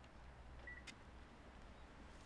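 Near silence: a faint steady low hum, with one short faint beep and a faint click a little under a second in.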